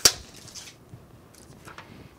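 Protective plastic film being peeled off a round hardboard sublimation coaster: a sharp snap right at the start, then a crinkling rustle for about half a second, and a few faint ticks of handling near the end.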